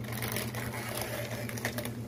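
Thin plastic inner bag of a cracker box crinkling and crackling as it is handled and pulled out of the box. The crackling is densest in the first second and a half, then thins to a few separate crackles.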